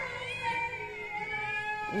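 A hungry pet cat meowing in one long, drawn-out call.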